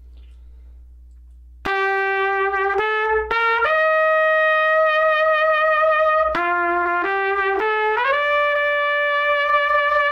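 Trumpet played with a Monette Classic B4LD S1 Slap mouthpiece, coming in about two seconds in with a warm, mellow tone. It plays two short phrases, each of four notes rising step by step and ending on a long held note.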